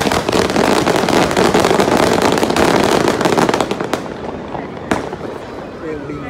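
Ground firework fountain spraying sparks with a dense crackling hiss for about four seconds, then dying away. One sharp crack comes about five seconds in.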